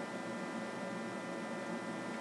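Steady hiss with a faint electrical hum underneath: room tone.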